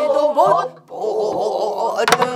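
Pansori singing by a teacher and a class of students in unison. The pitch slides up in a bend early on, breaks off briefly just before the middle, then resumes.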